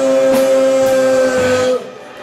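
Live rock band holding one long sustained electric guitar note over the band, which cuts off sharply near the end and leaves a brief quieter gap.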